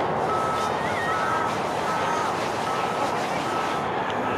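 A vehicle's reversing alarm beeping steadily, a single tone about every 0.8 s, over constant outdoor background noise.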